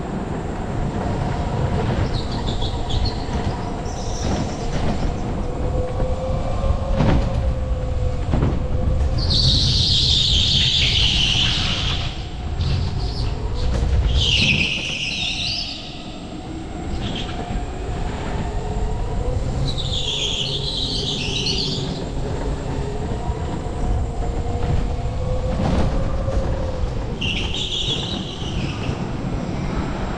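Electric go-kart driven hard: a steady motor whine that rises and falls in pitch with speed over the rumble of hard tyres on a concrete floor. Tyres squeal loudly through the corners, four times for a second or more each.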